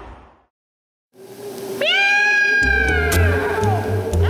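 Music fades out to a brief silence, then a spooky song intro opens with a long cat yowl, its pitch jumping up sharply and then sliding slowly down. A steady bass beat comes in under it about two and a half seconds in.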